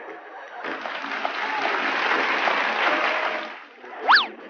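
Applause with a few voices mixed in. It starts about half a second in and dies away just before the end.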